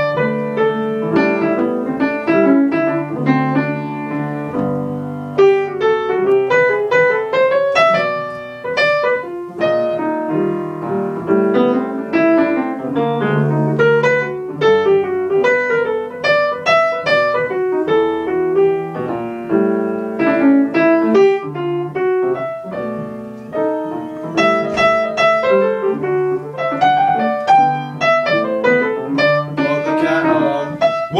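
Upright acoustic piano played solo, with both hands keeping up a continuous stream of chords and melody notes over a moving bass line.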